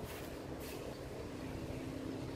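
A low, steady engine hum that sets in during the first second and carries on.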